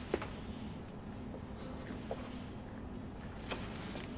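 Soft handling noises of a hand searching along the back of a wooden stage set: a few light knocks and taps, one just after the start, one about two seconds in and one near the end, over a faint steady hum.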